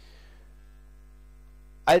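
Steady electrical mains hum, a low buzz with several even, level tones above it, through a pause in speech; a man's voice starts again near the end.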